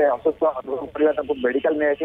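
A man speaking over a telephone line, his voice thin and narrow with no high end.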